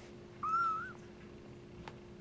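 A young kitten mewing once: a short, high-pitched mew of about half a second that rises slightly and drops at the end.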